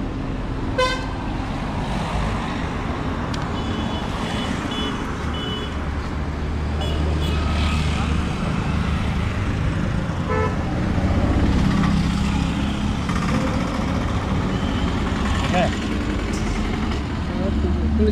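Road traffic running past with a steady low engine rumble, swelling as heavier vehicles go by. Vehicle horns toot in short bursts several times, first about a second in and then in a run of quick beeps a few seconds later.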